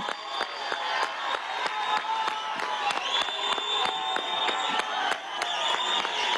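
A large outdoor crowd clapping and cheering, with long, steady high-pitched tones held over the applause from about the middle.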